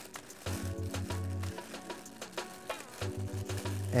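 Background music with a steady bass line, over the crinkling of a clear plastic bag as a microphone shock mount is unwrapped from it.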